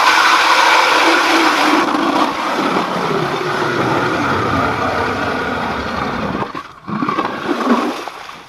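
ION electric ice auger with a Fin Bore blade drilling through layered lake ice: the motor runs under load and the blade grinds and scrapes through the ice at a steady, loud level. About six and a half seconds in the sound drops away, then picks up again briefly near the end as the auger is worked out of the hole.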